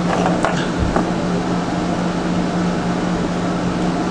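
A steady hum and hiss of running room equipment, with a couple of faint small clicks in the first second.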